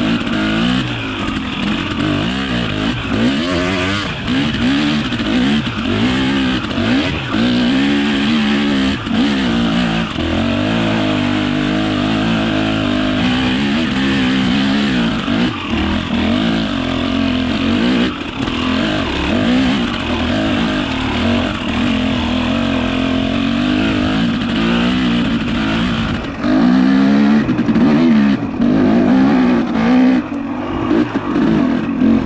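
Motorcycle engine heard from the rider's position, revving up and easing off again and again while under way, with wind rushing over the microphone. It gets louder near the end.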